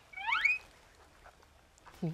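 A brief high squeak that rises steeply in pitch for about half a second.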